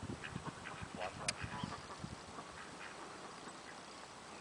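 A small flock of domestic ducks quacking in short, scattered calls while a herding dog holds them, with a single sharp tick about a second in.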